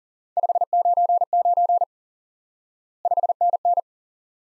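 Morse code sent at 40 words per minute as a single steady mid-pitched tone keyed into dits and dahs. One group of characters lasts about a second and a half, and after a pause a shorter group follows near the end.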